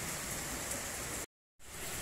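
Steady hiss of room background noise in a pause between speech, with the audio cutting out completely for a moment about a second and a quarter in.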